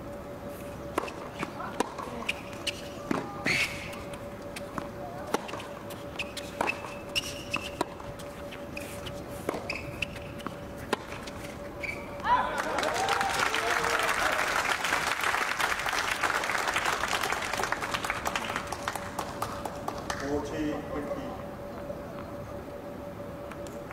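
Tennis rally on a hard court: racket strikes and ball bounces about once a second, with shoe squeaks, for about twelve seconds. When the point ends, a shout is followed by several seconds of applause, then a brief voice, over a faint steady hum.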